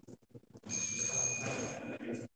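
A high, steady ringing tone held for about a second, starting a little way in, over a rustling noise.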